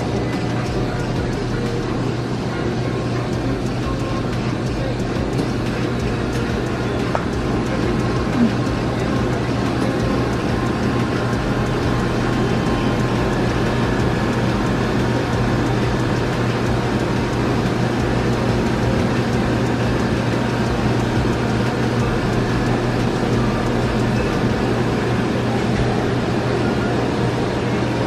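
Steady mechanical hum with a constant low drone and even whooshing noise from frozen-drink dispensers and store refrigeration.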